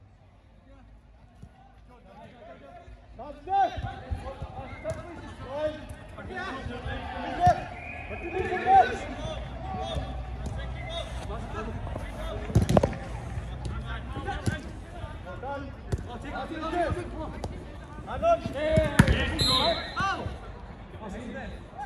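Five-a-side football on an artificial pitch: players' indistinct shouts to one another, with the thuds of the ball being kicked. After a quiet first few seconds the shouting starts; the sharpest kicks come a little past halfway and again near the end.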